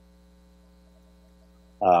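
Faint, steady electrical hum with several even overtones, the mains hum of a recording setup. Near the end a man's voice cuts in with a brief "um".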